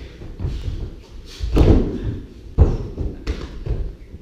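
A body hitting foam training mats during a takedown: two heavy thuds about a second and a half and two and a half seconds in, with smaller knocks and feet scuffing on the mat around them.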